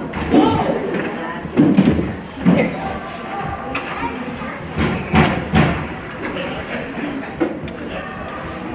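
Ice hockey rink sound: spectators talking at the glass, with a few sharp knocks from the play on the ice a little past the middle.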